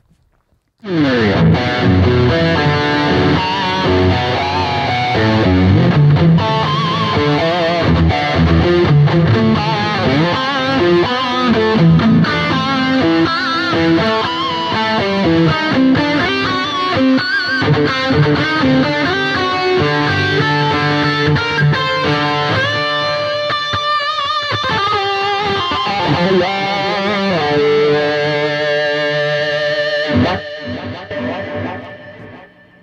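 Electric guitar played through a Mesa Boogie Triaxis preamp on its Lead 2 Red setting, a 2:90 power amp and 1x12 Rectifier cabinets: a loud, distorted, bold and aggressive lead tone with quick runs of notes, starting about a second in. A wah pedal is worked in part of the playing.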